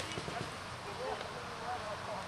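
A quick cluster of short knocks in the first half-second, over faint distant shouting voices.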